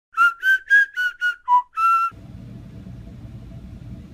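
A short whistled tune of seven quick notes, the last one held longer, ending about halfway in; then a steady low hum.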